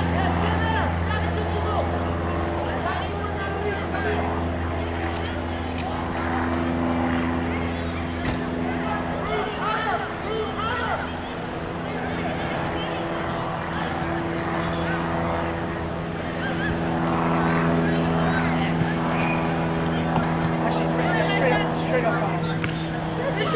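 A steady low mechanical hum runs throughout, its lowest note fading about a third of the way in, with scattered distant voices calling out over it.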